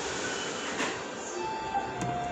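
A steady hum of room noise under faint background music, with a short sip a little under a second in as soup is drunk straight from the bowl.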